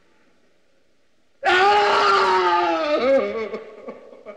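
A person's loud, drawn-out anguished cry, starting suddenly about a second and a half in, held for over a second, then a shorter rising-and-falling wail that trails off.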